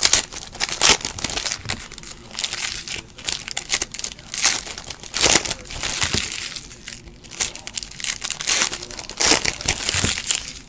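Shiny foil trading-card pack wrappers crinkling and tearing as they are ripped open, in irregular bursts.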